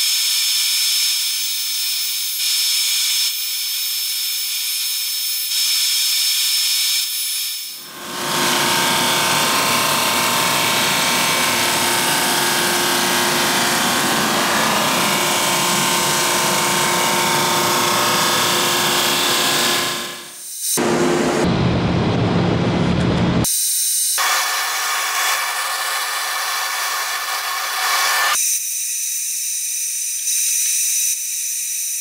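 Drum sander and its dust collector running steadily and loudly while pallet-wood strip panels are fed through to be sanded down to final thickness. The noise changes abruptly several times, at about 8, 20, 24 and 28 seconds, where separate passes are cut together.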